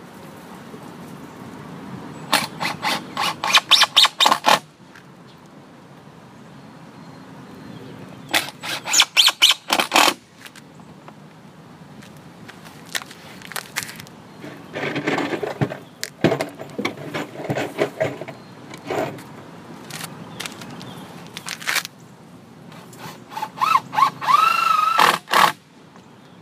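Cordless drill driving screws into a wooden hive wall mount, in two bursts of several short pulls of the trigger about two and eight seconds in, and again near the end with a rising motor whine. Clattering handling sounds in between.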